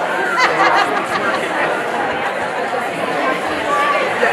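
Many people talking at once: a steady din of overlapping conversation from an audience working in small groups.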